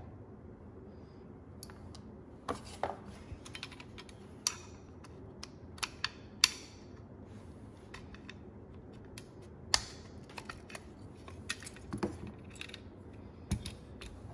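Small screwdriver prying metal push-on retaining clips off a plastic switch housing: scattered sharp clicks and scrapes of metal on plastic, the loudest about six seconds in.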